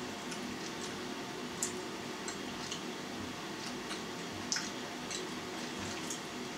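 Quiet mouth sounds of someone chewing a piece of hard cheese: small wet clicks at irregular intervals over a faint steady room hum.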